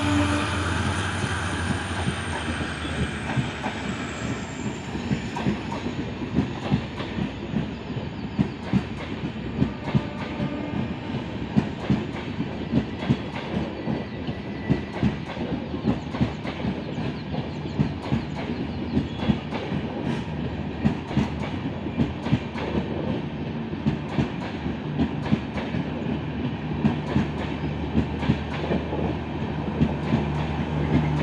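Indian Railways passenger coaches rolling past as the express pulls out of the station, their wheels clicking over the rail joints in a steady, repeating clickety-clack over a continuous rumble.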